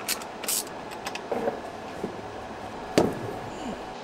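Small handling sounds of wiring being worked at a battery cell's terminal, with a sharp click about three seconds in.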